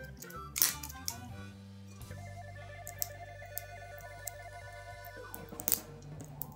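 Background music with held tones, over a few sharp clicks and crackles of plastic shrink-wrap being picked at on the neck of a rum bottle. The loudest crackles come just after the start and near the end.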